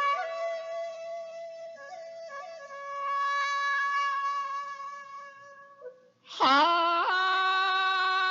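Shakuhachi playing a slow melody line with sliding pitch bends, fading out about six seconds in. A male min'yō folk singer then comes in loudly on a held note that swoops up into it and wavers with vibrato.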